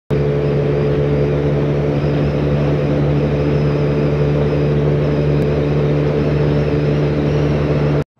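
A Kymco 125 cc scooter's air-cooled single-cylinder engine running at a steady cruising speed under way, its hum holding one pitch throughout.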